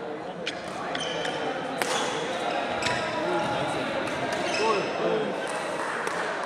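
Badminton rally in a large indoor hall: sharp racket-on-shuttlecock hits about a second apart and short squeaks of shoes on the court mat, over a murmur of voices in the hall.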